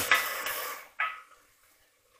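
Beef chunks sizzling as they brown in oil in a cast iron casserole pot, fading over the first second. A brief high sound comes about a second in, then the sound cuts out to silence.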